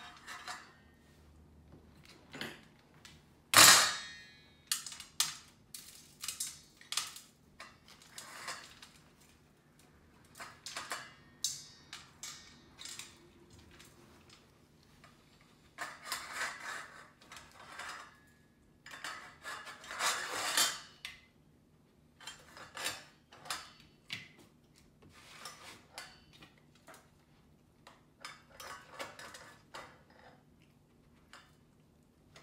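Metal utensils clinking and scraping against each other and against a stainless steel bowl as a puppy noses through it, in irregular bursts with short pauses. There is one sharp, loud clank about three and a half seconds in, and busier clattering around the middle and two thirds of the way through.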